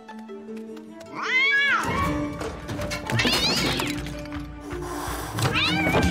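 Cartoon cat yowling three times, each long call rising then falling in pitch, over background music.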